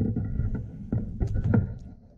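Handling noise as the camera is moved: a low rumble with a few sharp knocks, fading out near the end.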